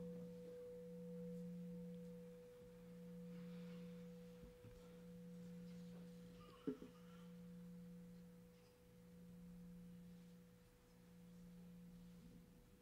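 A faint, steady low tone with a fainter higher tone above it, swelling and fading about every two and a half seconds. A soft click a little past halfway.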